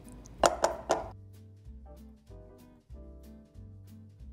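Soft background music with slow, steady notes. About half a second in, a few quick clinks and scrapes of a spatula against a small glass bowl as butter is scraped out.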